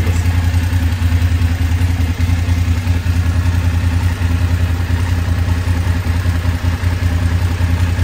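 BMW F850GS's parallel-twin engine idling steadily just after start-up, run for about 30 seconds to circulate freshly filled engine oil before the level is checked.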